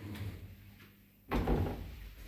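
A sudden heavy thud about a second and a half in, as a foot steps onto the floor of a small Ayssa lift car, after a quiet moment.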